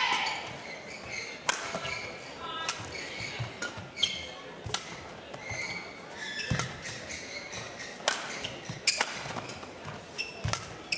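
Badminton rally: racket strings strike the shuttlecock in sharp cracks about every second, between them short high squeaks of players' shoes on the court floor, over a steady crowd murmur.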